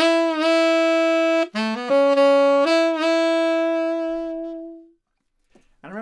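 Tenor saxophone playing a short rock phrase of scooped notes: a held note bent into from below, a quick run of rising notes, then longer notes, the last one held and fading out about five seconds in.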